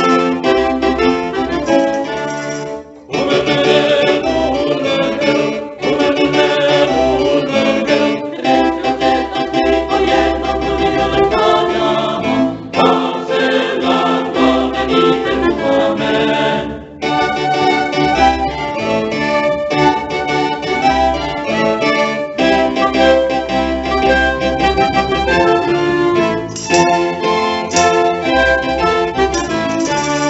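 Instrumental interlude of a Renaissance Spanish song: violins playing the tune over a keyboard accompaniment, in short phrases with brief breaks between them.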